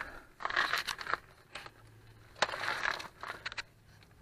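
Gravel crunching and scraping in two short bursts, with a few light clicks, as someone shifts position on a gravel surface.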